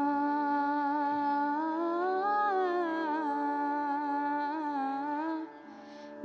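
Indian vocal music: a singer holds one long note over a steady drone. The pitch rises a little midway and eases back down, and the voice stops shortly before the end, leaving the drone alone.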